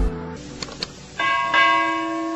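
Subscribe-animation sound effects: the outro music's beat stops, two soft clicks follow, and a little over a second in a bright bell chime rings out and holds.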